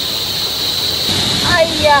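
Small rocky stream rushing steadily over stones, an even wash of water noise.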